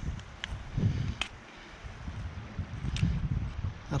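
Wind buffeting the microphone in an uneven low rumble, with a few faint clicks.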